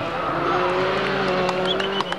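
Skoda Octavia WRC rally car's turbocharged four-cylinder engine running at a steady high note, growing louder as the car approaches, with a few sharp cracks near the end.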